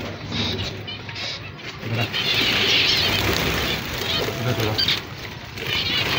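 A flock of zebra finches in an aviary, chirping with short calls and fluttering, with a louder stretch of noise about two to four seconds in.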